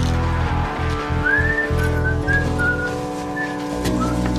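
Whistling: a short tune of a few brief notes, the first gliding upward, over background music with a pulsing bass.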